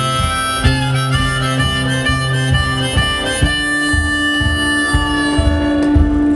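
Hohner harmonica in a neck rack playing an instrumental solo over a strummed acoustic guitar, settling about halfway through onto one long held note.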